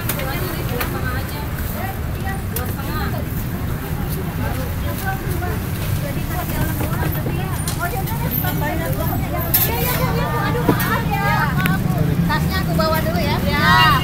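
Busy street ambience: a steady low rumble of traffic under scattered background voices chattering, with a few sharp clicks about ten seconds in.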